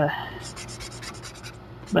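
Felt-tip marker strokes scratching on paper, a quick run of short back-and-forth strokes as an area of the drawing is coloured in.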